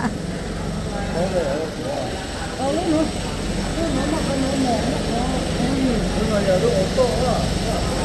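People talking in low voices over a steady low hum.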